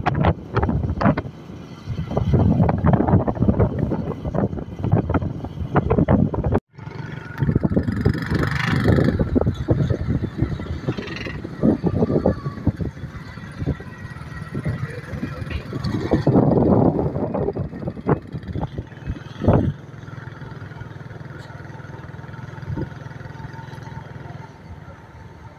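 A vehicle ride: an engine hum runs steadily under heavy, irregular wind buffeting on the microphone, cut off for a moment about seven seconds in, then steadier and quieter in the last few seconds.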